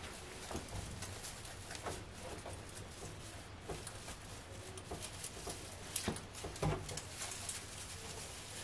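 Artificial pine wreath being fluffed by hand: faint rustling and crackling of its branches, with a few louder crackles about six seconds in.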